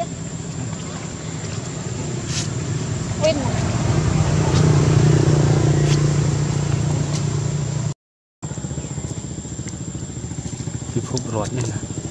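A motor engine running steadily, growing louder to its peak about five seconds in. It cuts off suddenly near eight seconds.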